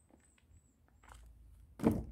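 Footsteps on bare wooden plank steps, soft at first, ending in a sharp, louder knock near the end.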